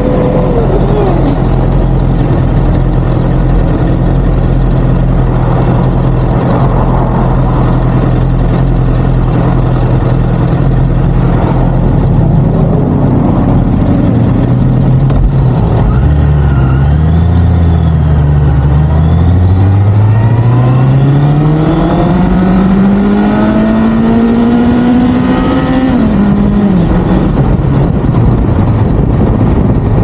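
Honda CBR650R inline-four engine idling steadily, then pulling away from about halfway through, its pitch rising for about ten seconds before it drops off near the end as the throttle is closed.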